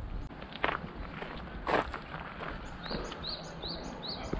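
Footsteps outdoors, with two louder scuffing steps in the first two seconds. From about three seconds in, a bird calls a short, high chirp over and over, about two or three a second.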